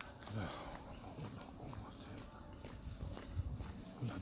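Footsteps on stone paving: a faint, uneven series of light taps and low thuds.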